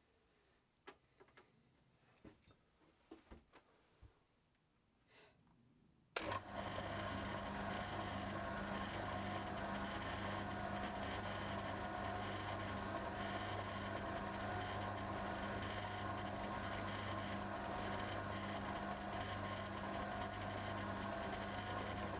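A few faint light clicks of small metal parts being handled, then a milling machine starts abruptly about six seconds in and runs steadily with a low hum, its chuck holding a two-flute cutter.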